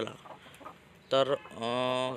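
A man's voice. After about a second of quiet comes a short syllable, then a long, steady, drawn-out vowel like a hesitation sound.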